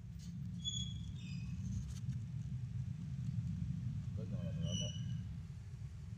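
Young kittens giving a few faint, short, high-pitched squeaks, some about a second in and more near five seconds, over a steady low rumble.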